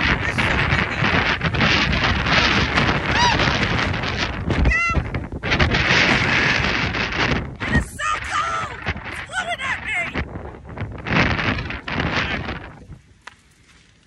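Strong wind gusting across a phone microphone, with a woman's short strained vocal exclamations about halfway through. The wind noise dies away in the last second or so.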